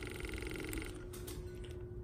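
Small self-priming 12 V water pump running with a steady buzz while the solenoid shut-off valve is powered open, stopping about a second in when power is taken off and the valve closes, dead-heading the pump.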